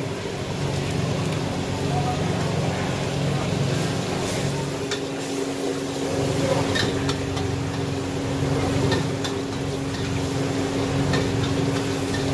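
High-pressure gas wok burner running with a steady roar and hum while noodles are stir-fried, the metal ladle clanking and scraping against the wok at irregular moments, with frying sizzle.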